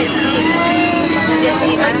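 Metro train running through a tunnel, heard from inside the car: a loud, steady rumble with a constant hum and a few thin whining tones, with passengers' voices mixed in.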